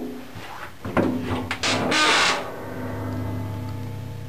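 A steel compartment door's lever latch clicks and the door is pulled open, with a drawn-out metallic creak and scrape as it swings. A steady low hum follows in the last second or so.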